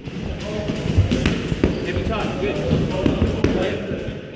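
Boxing gloves punching focus mitts: a run of sharp impacts, the loudest about a second in.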